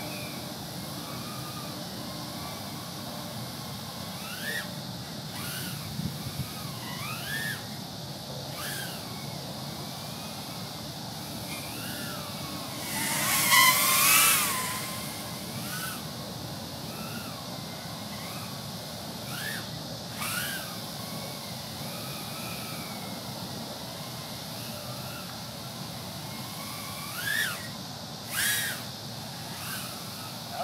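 Brushless motors of a 100 mm mini racing quadcopter whining in flight, the pitch rising and falling as the throttle changes. About 13 seconds in it comes close and grows loud for a second or two, with two shorter loud bursts near the end.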